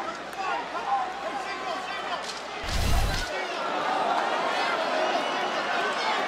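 Arena crowd noise with indistinct shouted voices, and one heavy thump about three seconds in that briefly stands out over everything else.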